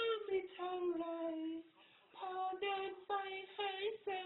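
A woman singing without accompaniment: a phrase ending in a long note that slides down, a short pause, then a run of short, quick notes.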